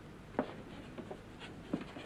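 A few short, irregular scratchy taps and rubs, spaced about half a second apart, over faint room noise.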